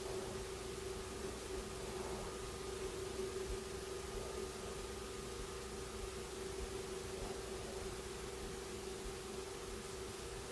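Quiet room tone: a steady faint hiss with a low steady hum, and a few faint rustles from a small snake being handled in the hands.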